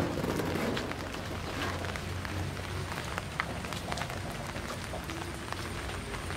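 Light rain falling steadily, with scattered drops ticking.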